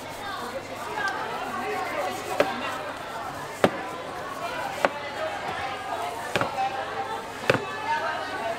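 A long kitchen knife knocking on a plastic cutting board while trimming the rind off a peeled half watermelon, about five sharp knocks a second or so apart from about two seconds in, over background chatter of voices.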